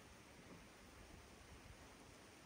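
Near silence: a faint, steady hiss of outdoor ambience.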